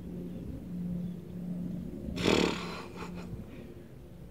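A short, breathy vocal sound from a man, like a grunt or snort, about halfway through, over a faint steady low hum.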